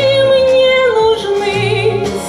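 A woman singing one long held note into a microphone, with vibrato, stepping down to a lower note about halfway through, over an accompaniment of low bass notes.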